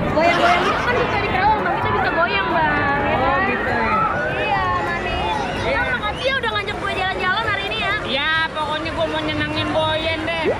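Several voices talking and calling out over one another, with crowd chatter behind them.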